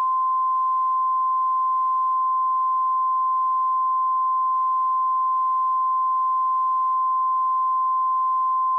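Broadcast line-up test tone played with colour bars: one steady, unbroken pure tone, the sign that the channel's normal programme has been lost.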